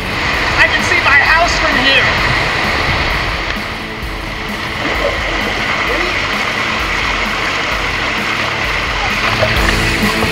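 Steady rush of water running down a tube water slide, echoing in a large indoor pool hall, with a few brief calling voices in the first two seconds.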